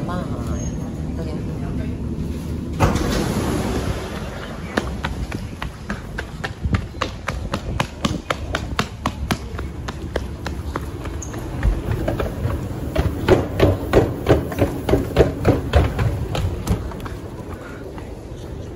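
Rumble inside an MRT train pulling into a station, with a sudden burst of noise about three seconds in. Then quick, regular running footsteps on a polished stone station floor, loudest a few seconds before the end.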